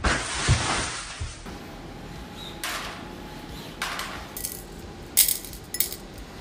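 A crash of glass breaking at the start, dying away over about a second and a half. Then a few sharp clinks, the loudest two near the end, of small metal screws dropping into a glass jar.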